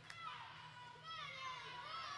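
Children's high-pitched voices shouting and cheering over one another in a crowd, with no clear words.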